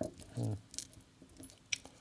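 Small steel bolts and washers clinking against one another as a hand picks through a pile of loose hardware, with a few light clicks spread through, and a short spoken "hmm" about half a second in.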